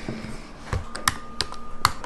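Computer keyboard typing: a few separate key clicks, irregularly spaced.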